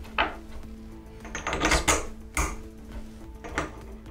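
Steel parts of a spindle-moulder cutter block clinking and scraping as the top nut is handled and spun onto the arbour's thread: a few sharp metallic knocks, a cluster of them about halfway through. Soft background music runs under it.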